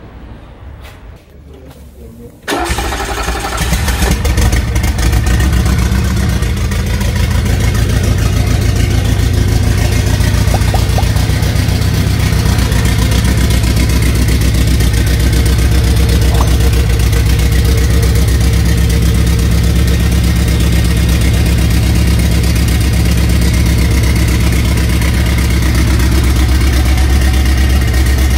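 Turbocharged carbureted car engine starting about two and a half seconds in, then idling steadily.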